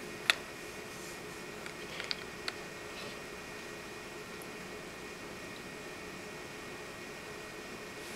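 Quiet room tone: a faint steady hum, with a few light clicks in the first three seconds.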